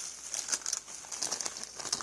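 Clear plastic packaging crinkling as it is handled, a light, continuous rustle.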